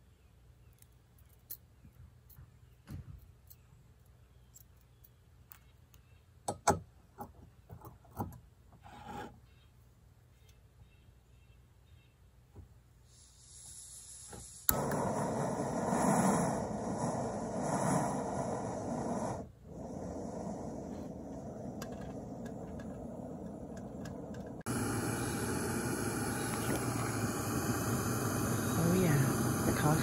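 Light metal clicks and taps as a canister backpacking stove is handled and screwed onto its gas canister. About halfway through, the burner lights with a sudden jump into a steady hiss, which carries on to the end and grows louder near the end.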